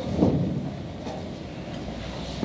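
Handling noise on a handheld microphone: a dull bump about a quarter second in, then low rumbling.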